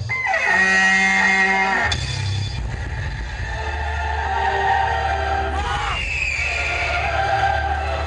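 Electronic dance-routine music played loud over speakers: a downward-sweeping effect settles into a held chord, then cuts to a steady bass beat, with another falling sweep about six seconds in.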